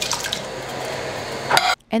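Canned diced tomatoes and their juice pouring out of the tin into a pot, a steady wet pour lasting about a second and a half.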